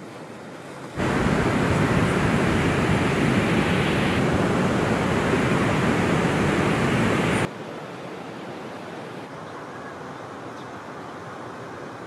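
Ocean surf: breaking waves and rushing whitewater. It is loud from about a second in until it cuts off suddenly after about seven and a half seconds, then gives way to a softer wash of surf.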